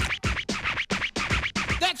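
Turntable-style DJ scratching: a rapid run of short back-and-forth scratch strokes, played in the cartoon on a hard-drive platter as if it were a record.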